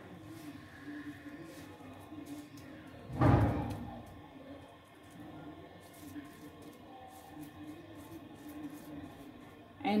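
Faint sound of a pot of water at the boil as a bundle of dry spaghetti is lowered into it, with one loud, dull thump a little over three seconds in.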